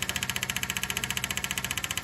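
Brand-new electric fuel pump under the car running, with a rapid, even ticking of about fourteen clicks a second.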